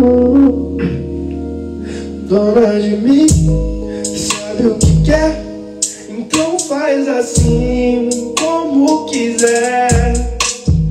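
A man singing a melody into a handheld microphone over a hip-hop beat, working out a freestyle chorus; deep bass hits come in about three seconds in.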